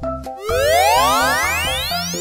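Upbeat children's background music with a cartoon sound effect: a rising sweep that starts about half a second in and climbs steadily in pitch for over a second.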